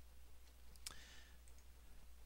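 Near silence with a faint steady hum, broken by a single sharp computer mouse click about a second in.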